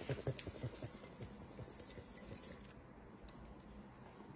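Faint pattering and scratching of a buttered panko-and-Parmesan crumb topping sliding out of a metal bowl onto a creamy dip. The patter thins out and fades over the second half.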